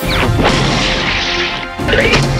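A sudden crash sound effect whose pitch falls quickly, over background music.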